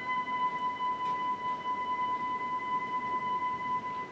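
Live theatre orchestra holding a single high note steadily, ending near the end.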